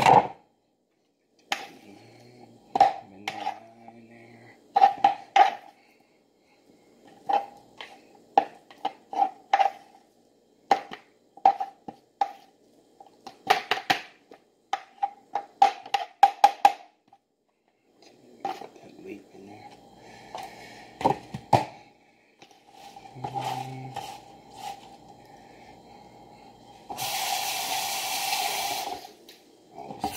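Kitchen knife chopping food on a cutting board: irregular runs of short knocks, with a faint steady hum underneath. Near the end a loud rush of noise lasts about two seconds.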